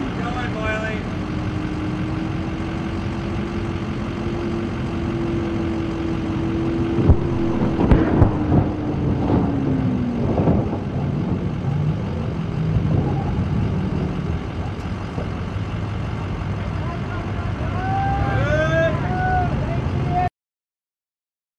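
A vehicle engine running with a steady hum that sinks in pitch around ten seconds in, with a cluster of knocks between about seven and eleven seconds.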